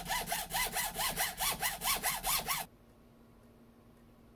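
Hacksaw cutting through a plastic IDE hard-drive ribbon connector held in a bench vise, in fast back-and-forth strokes of about five a second, each stroke rising and falling in pitch. The sawing stops abruptly about two and a half seconds in, leaving faint room tone.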